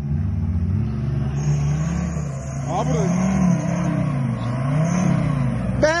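Off-road SUV engine pulling up a muddy slope, its revs rising and falling twice.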